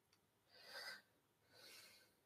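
Near silence with two faint breaths, one about half a second in and a weaker one near the end.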